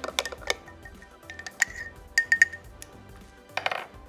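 A metal spoon stirring thick peanut sauce in a small glass jar: a quick run of scraping clicks at first, then a few separate ringing clinks of spoon against glass about two seconds in.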